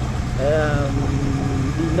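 A motorcycle running steadily while being ridden: a continuous low drone of engine and road noise.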